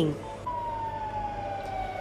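A siren wailing: one long tone that comes in about half a second in, falls slowly in pitch, and starts to rise again at the very end, over low steady street noise.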